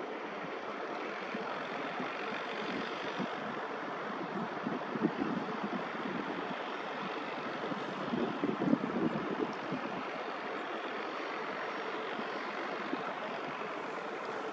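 Steady outdoor rushing noise of wind over an open coastal construction site. There are rougher, louder gusts about five seconds in and again around nine seconds.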